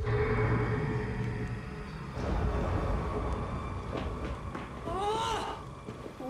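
A sudden low rumble with a steady droning tone, a dramatic sound effect from a TV drama's soundtrack, fading slowly over several seconds. A short voice is heard near the end.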